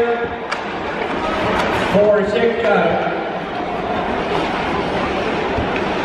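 Ice hockey arena sound during play: a steady hiss of skates on ice and crowd in a large hall, with a few sharp clicks from play on the ice. A man's voice comments briefly about two seconds in.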